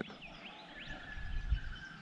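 Faint bird calls: a few short sweeping chirps, then one thin held note in the second half.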